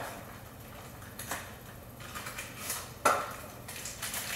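A packet of instant pudding mix being opened by hand: faint crinkling and tearing of the packaging, with a sharper, louder rip about three seconds in.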